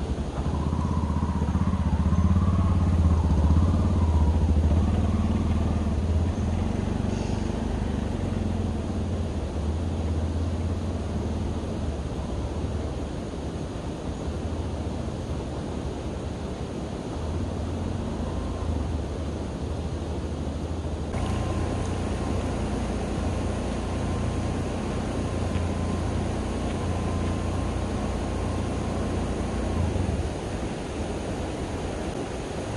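A three-wheeled auto-rickshaw (tuktuk) engine running as it pulls away, loudest a few seconds in, then fading with distance. After a sudden change about two-thirds through, a steady rush of shallow stream water takes over.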